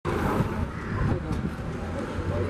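Outdoor street ambience: steady rumbling background noise with indistinct voices of a small crowd.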